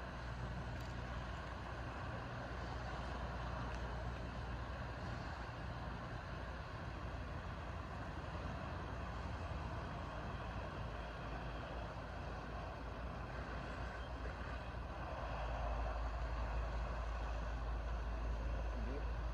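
Distant fire apparatus running steadily at a house fire, a continuous low rumble under a wide hiss as the ladder truck pumps water through its aerial nozzle. The low rumble grows louder near the end.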